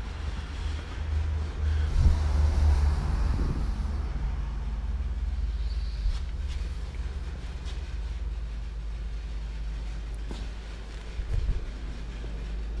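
Steady low rumble of workshop background and moving-microphone noise, stronger in the first few seconds, with a few soft knocks from handling around the open car doors.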